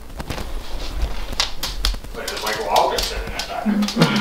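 A dog briefly whimpering about two and a half seconds in, among scattered light clicks and knocks, with a man's voice starting at the very end.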